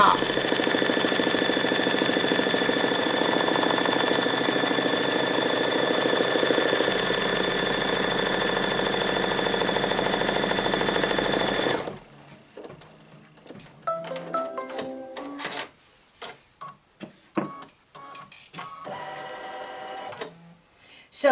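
Brother Luminaire embroidery machine running steadily as it stitches a placement outline on stabilizer, then stopping about twelve seconds in when the outline is finished. After it come scattered clicks and a few short beeps.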